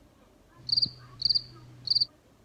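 Cricket-chirp sound effect: three short trilled chirps about half a second apart, over a low steady hum that starts and stops with them.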